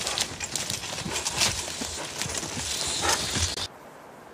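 Hoofbeats of a draft horse in logging harness moving through brush, with many sharp knocks and crackles of twigs and wood. The sound cuts off suddenly near the end.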